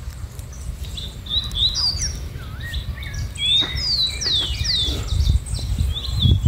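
Birds chirping: a run of short, high whistled notes, most sliding downward in pitch, starting about a second in and coming thickest in the second half, over a low rumble.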